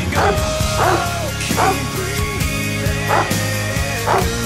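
A large dog barking over background music: four short barks, the last after a longer pause.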